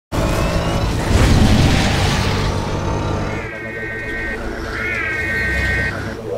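A heavy car engine rumbling and revving past as the Batmobile drives by, loudest about a second in. Then the Ecto-1's siren sounds in a held wailing tone that dips and swoops back up once.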